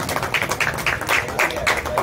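Hand clapping in a steady rhythm, about three to four claps a second.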